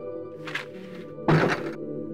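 Soft background music, cut across by a short rustle about half a second in and then a loud thunk of a wooden door being shut about a second and a half in.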